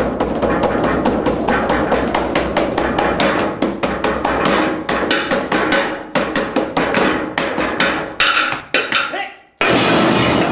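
Fast, irregular strikes of a wooden stick on a hard surface, a dense clatter that thins into separate hits after about six seconds, drops out for a moment near the end and then comes back loud.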